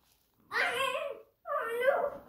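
Two short, high whining cries, the second starting about a second and a half in.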